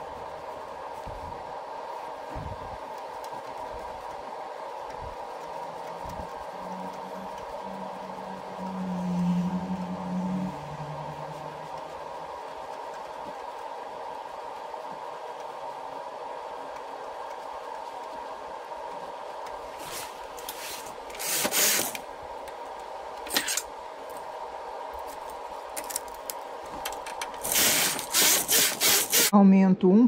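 Hands handling yarn and needles on a flatbed home knitting machine, with a few light clicks, over a steady faint hum. Near the end the knitting carriage is run across the needle bed in a quick series of loud strokes.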